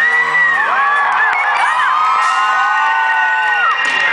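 Concert audience cheering and whooping, many high voices overlapping, over the band's music.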